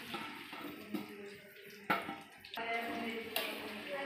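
Chopped amla (Indian gooseberry) pieces dropped into hot mustard oil in an iron kadhai, the oil sizzling and bubbling softly around them. A single sharp knock about two seconds in.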